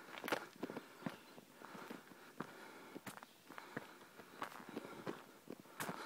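Footsteps on a dirt forest trail littered with dry leaves and twigs, an irregular step every half second or so, with a sharper step just after the start and another near the end.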